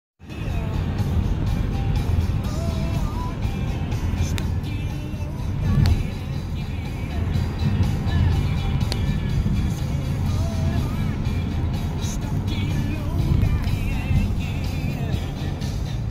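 Steady road and engine rumble of a car driving on a highway, with music playing over it.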